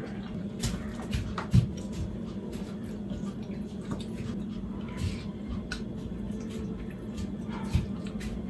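Kitchen clatter: a few scattered knocks and thumps of things being handled, one strong thump just before the end, over a steady low hum.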